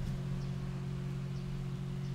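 A steady low hum with faint background noise.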